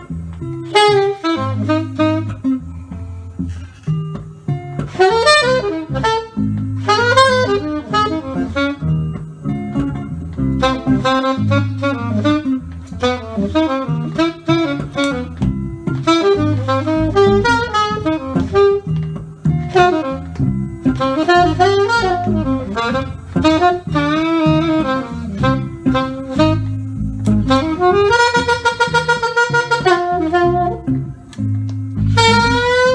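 Live jazz improvisation: an alto saxophone plays fast, winding lines over electric guitar accompaniment with a repeating low pattern. Near the end the saxophone holds one long note.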